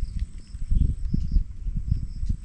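Wind buffeting the microphone in uneven low gusts and rumbles, with faint repeated high chirps and a thin steady high tone behind it.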